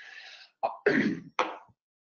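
A person clearing their throat: a breathy rasp, then three short hacks that stop shortly before speech resumes.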